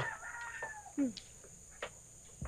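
A rooster crowing, its call held and slightly falling over about the first second, with a short falling call about a second in and a couple of faint knocks after.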